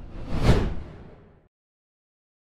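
A whoosh transition sound effect, swelling to a sharp peak about half a second in and fading out by a second and a half.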